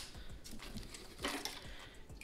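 Faint handling noise of flush cutters working at a plastic zip tie: light knocks and a short rustle about a second and a quarter in.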